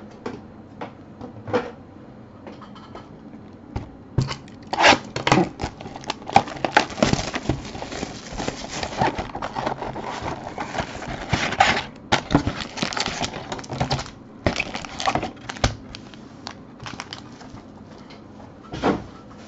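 Foil trading-card packs crinkling and rustling as they are pulled out of an opened hobby box and set down in stacks, with sharp ticks and taps of cardboard and packs. A few clicks come first, then dense crinkling through the middle, then a few scattered taps.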